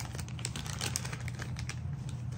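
Quick, irregular light clicks and crinkles of small air-hose fittings being handled in a plastic parts bag, over a steady low hum.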